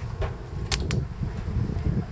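Wardrobe door being swung shut: a few sharp clicks, two of them close together about three-quarters of a second in, over a low handling rumble.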